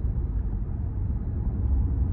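Steady road and engine noise inside the cabin of a moving car, a low, even sound with no other events.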